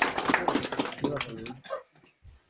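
A small group clapping, mixed with raised voices. It stops about a second and a half in.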